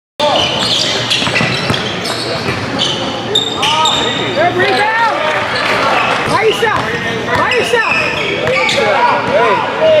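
Live sound of an indoor basketball game cutting in suddenly: the ball dribbling on a hardwood court, sneakers squeaking, and players and spectators calling out, with a shout of "Yay!" near the end as a shot goes up.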